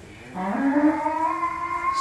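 Bull in a cattle pen mooing: one long, low call that starts about a third of a second in, rises slightly in pitch and then holds steady.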